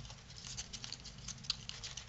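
Cardstock being pushed up and pinched into a fold by hand: faint, irregular crackles and rustles of stiff paper, with one slightly sharper crackle about one and a half seconds in.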